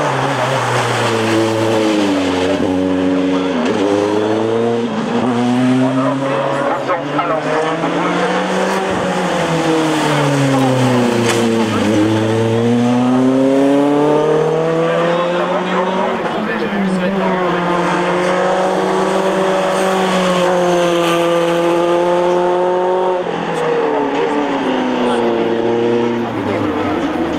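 Tatuus Formula Renault 2000 single-seater's 2.0-litre four-cylinder Renault engine revving hard on a hill-climb run. Its pitch climbs through each gear and drops sharply on the shifts, falls deeply once when the car slows for a bend, holds fairly steady for several seconds, then climbs again near the end.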